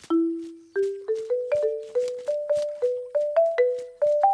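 A short melody of mallet-struck, marimba-like notes: one long low note, then a quick run of about a dozen notes that climbs step by step in pitch, each note ringing and fading.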